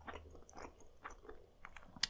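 Faint close-miked mouth sounds of someone chewing a mouthful of eel sushi: a few small, soft, moist clicks scattered irregularly.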